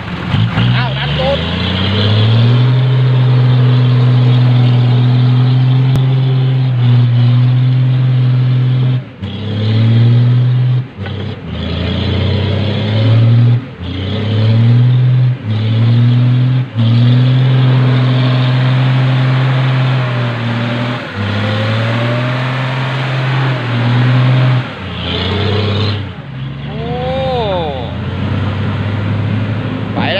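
A loaded dump truck's diesel engine is revved hard in repeated bursts, held high for a few seconds at a time with short let-offs, as the truck strains to pull out of deep mud. Near the end the engine settles to a lower, steadier note as the truck gets moving.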